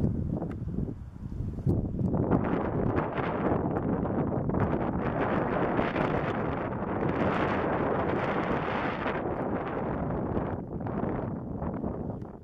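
Wind buffeting the camera's built-in microphone, a rough low rumble that swells about two seconds in and eases off near the end.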